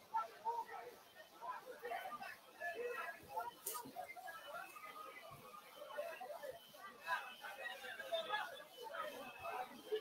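Faint, scattered voices, the distant calls and chatter of players and onlookers around an amateur football pitch, with a single sharp click about three and a half seconds in.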